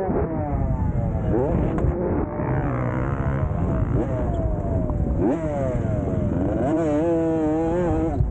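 Dirt bike engine under hard throttle, its pitch repeatedly climbing and dropping back as the rider revs and eases off.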